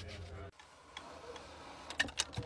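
Quiet crystal-handling sounds: a low steady hum cuts off about half a second in, then a few faint light clicks follow, and a sharper click comes near the end as small stones are handled in a clear plastic compartment tray.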